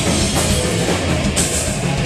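A heavy metal band playing live and loud, with distorted electric guitars and a drum kit.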